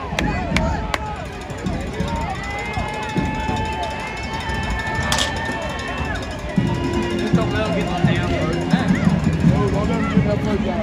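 Stadium crowd voices with band music, mostly held notes. A few sharp beat-like hits at the start, long sustained notes in the middle, and a lower, stepping line of notes from about two-thirds of the way in.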